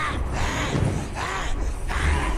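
Movie fight-scene soundtrack: short cries, each rising and falling in pitch, about one a second over a low rumble.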